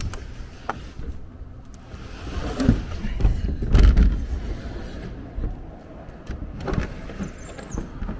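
An old wooden window being forced open, the frame scraping and rumbling as it is pushed, loudest about halfway through, with a few sharp knocks.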